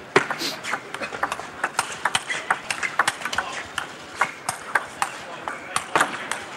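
Table tennis rally: a celluloid ball clicking sharply off the rackets and the table in quick, irregular succession, several hits a second.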